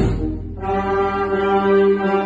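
Concert wind band playing a march. After a brief dip in the first half-second, the band holds a long sustained chord with the brass prominent.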